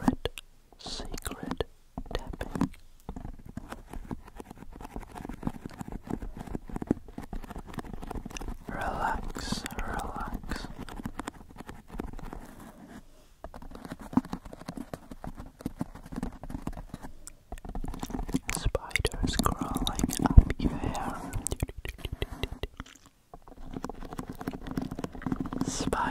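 Close-up mouth sounds and breathy whispering made into a foam pipe-insulation tube: a dense run of quick wet clicks, swelling louder twice, with a few short pauses.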